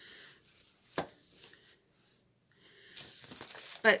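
Paper rustling as a sheet of cross-stitch chart paper is handled, with a single sharp tap about a second in. A quiet gap falls around the middle, and the rustling grows louder near the end.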